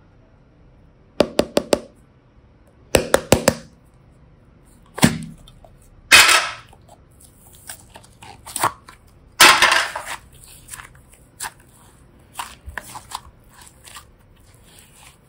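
Hand-held plastic box and the slime inside it: runs of sharp plastic clicks as the snap lid is pried open, then two louder crackling bursts as the blue slime is peeled out of the box, with smaller clicks after.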